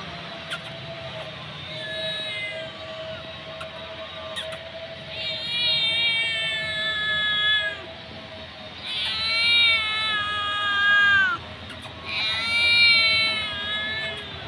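A hungry kitten meowing: four long, high, drawn-out meows, the later three the loudest, one ending with a drop in pitch.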